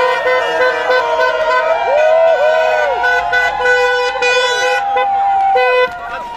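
Several car horns honking together, held and overlapping at different pitches, with people whooping over them; the horns cut off just before the end.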